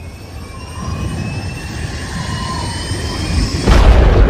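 Logo-sting sound effect: a whooshing riser that swells steadily louder with faint rising whistle-like tones, then a sudden loud, deep impact near the end.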